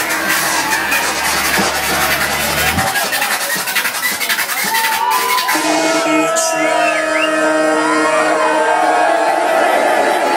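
Electronic club music mixed live by a DJ on turntables, played loud over a club sound system, with crowd voices and cheers. The driving beat and deep bass cut out suddenly about three seconds in, leaving sustained held tones.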